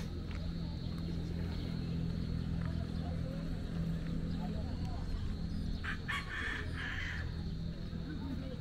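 A rooster crowing once, a call of a little over a second starting about six seconds in, over a steady low hum.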